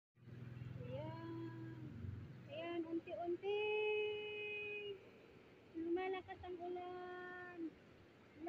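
Children's voices calling out in long, drawn-out notes, several times over, above a steady hiss of heavy rain.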